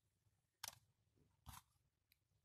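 Two faint, short clicks about a second apart: the metal electrode assembly of a PL500 pentode vacuum tube being handled and pried apart by hand, otherwise near silence.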